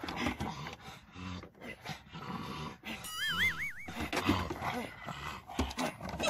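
Pugs moving about on a wooden deck, with scattered clicks and low dog sounds. About three seconds in, a brief wavering whistle-like tone.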